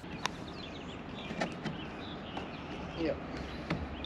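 Quiet outdoor background with faint bird chirps and a few light clicks.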